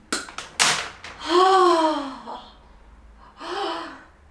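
A woman's voice without words: a few quick, sharp breaths, then a long exclamation falling in pitch, and a shorter vocal sound near the end.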